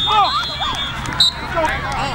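Many voices shouting and calling out at once from players and spectators at a football game, one voice calling "oh" at the start.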